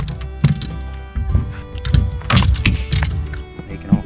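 Background music over several dull thumps in the boat as a freshly landed bass is handled. It is the kind of noise that spooks other fish.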